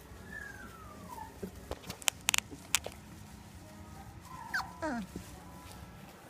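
A three-week-old Labrador puppy gives a short whimper that falls in pitch, about half a second in. About two seconds in, a few sharp clicks follow.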